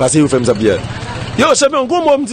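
A man speaking in an interview, his voice close to the microphone.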